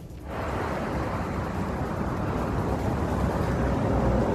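Steady rush of outdoor street traffic picked up on a phone's microphone, cutting in a moment after the start.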